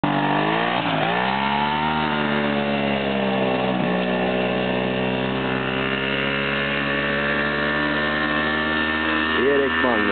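Ski-doo Elan snowmobile's two-stroke engine running hard as it pulls away, its pitch dipping and climbing back twice in the first four seconds, then holding a steady high note.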